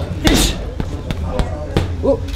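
Punches landing on a large Title heavy bag: one hard thud about a quarter second in, then a few lighter ones, over the chatter of a crowd.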